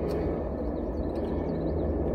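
Steady low rumble with a faint even hum inside a stationary car's cabin.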